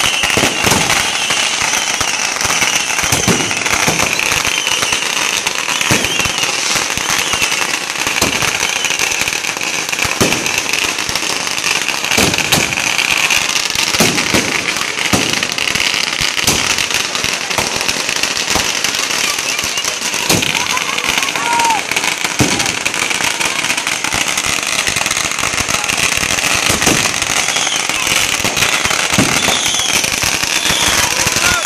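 Consumer fireworks going off: sharp bangs at irregular intervals, sometimes several a second, over continuous crackling from bursting aerial stars and firecrackers.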